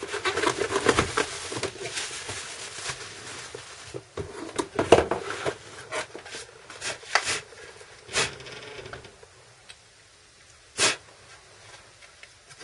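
Cardboard box and plastic packing rustling as a soldering station is pulled out of its packaging, followed by scattered knocks and taps as it is handled. The sharpest knock comes about five seconds in, and it goes quieter near the end.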